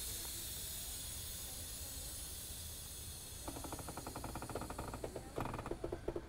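Rear air suspension of a VAZ 2107 venting air with a steady hiss as the back of the car lowers, the hiss slowly fading. About three and a half seconds in, a rapid light ticking starts, about ten ticks a second, turning louder and more uneven near the end.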